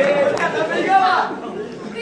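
Only speech: voices talking, louder for about the first second and quieter after that.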